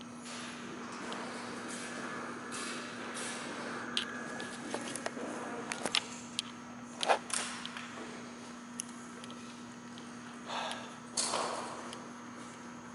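Quiet room tone with a steady low hum, broken by scattered light clicks and a few short sounds; the sharpest is about seven seconds in, and a brief noisy patch comes near the end.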